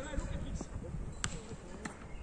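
Football being kicked: two sharp knocks, the second about half a second after the first, over a steady low rumble.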